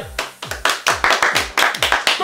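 A few people clapping their hands, quick and uneven, over background music with a steady thudding beat.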